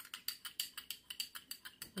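Metal spoon stirring water in a small glass bowl, tapping against the glass in quick, light, irregular clinks, several a second, as a cosmetic preservative is dissolved.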